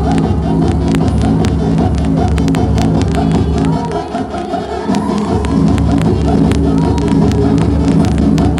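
Electronic dance music played loud over a club sound system with a pulsing kick-drum beat. About four seconds in, the bass drops out briefly under a rising sweep, then the beat comes back in.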